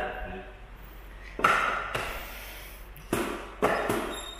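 Drumsticks striking the pads of an electronic drum kit: a single hit about a second and a half in, then three quick hits near the end, each with a short ringing tail.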